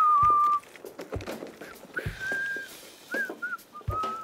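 Someone whistling a tune in short, wavering phrases, with a few low thumps as a suitcase is handled.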